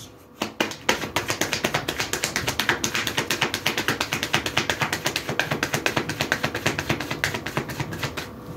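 A deck of tarot or oracle cards being shuffled by hand: a fast, even run of card slaps, about ten a second, that stops just before a card is drawn.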